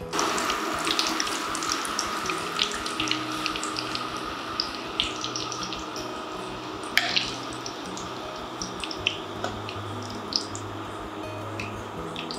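Chilli fritters (mirchi bajji) deep-frying in hot oil in a kadai: a steady sizzle with scattered small pops, and one sharp tap of a metal spoon about seven seconds in.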